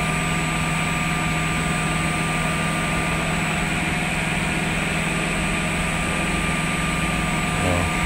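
S8 S468JP automatic edge banding machine running steadily without a board feeding: an even electric motor hum with several steady whine tones over constant mechanical noise.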